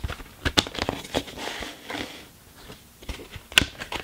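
Plastic CD jewel case being handled and opened: a run of short sharp clicks and crackles over faint rustling, with the loudest click near the end.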